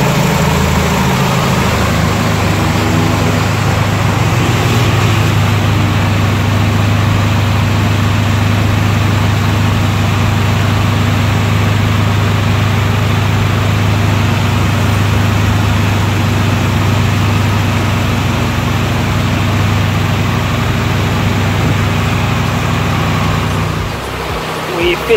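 A 2000 Mitsubishi Lancer's engine idling steadily with the air conditioning switched on, its A/C compressor running while the system is being recharged with refrigerant.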